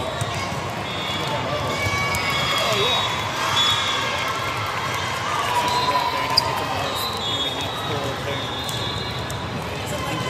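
Echoing din of a large indoor hall with several volleyball games going on: many voices talking and calling out, volleyballs being struck and bouncing on the court, and short high squeaks of sneakers on the floor. A single sharp ball strike stands out about six and a half seconds in.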